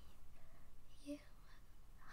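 A soft whispered word, "you", about a second in, between louder spoken lines of a roleplay voice.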